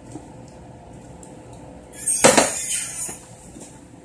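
A sudden clatter of hard objects a little over two seconds in, dying away over about a second.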